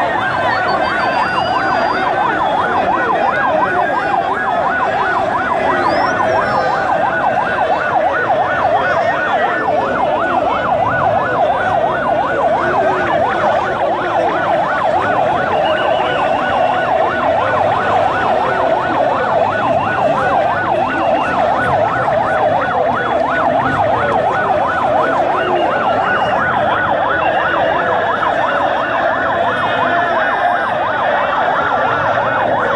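Electronic siren with a fast, regular warble, running steadily over the noise of a large crowd of voices.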